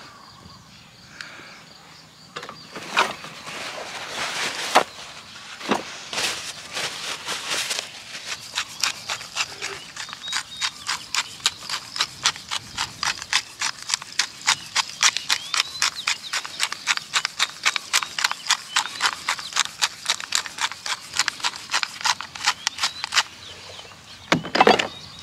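Wooden hand pepper mill being twisted over a fish fillet, grinding black pepper. A few separate strokes come first, then its grinding mechanism clicks in a steady, even run, about four clicks a second, for most of the time.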